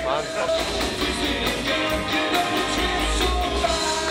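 Rock and roll band music with singing, electric guitars and a steady drum beat.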